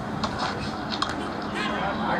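Cricket bat striking the ball: a single sharp knock about a second in, over a steady background hiss.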